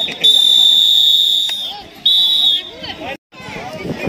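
Referee's whistle blown: a long shrill blast of about a second, then a shorter blast about two seconds in.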